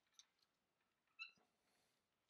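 Faint clicks and a brief high squeak from ABS plastic LEGO pieces being pressed and slid into place by hand; the squeak comes about a second in.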